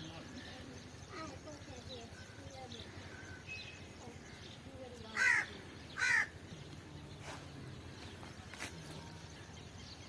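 A crow cawing twice, about a second apart, midway through, over faint distant voices and small bird chirps.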